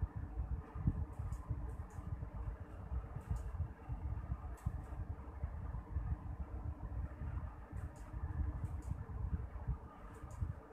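A low, uneven background rumble, like a fan or distant traffic, with a few faint soft ticks scattered through it.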